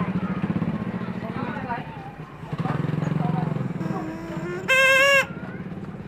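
A vehicle horn honks once, loud and about half a second long, near the end, over a low steady engine hum and voices.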